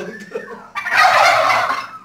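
A flock of domestic turkeys gobbling: one loud gobble lasting about a second starts a little under a second in, with quieter calls from the flock before it.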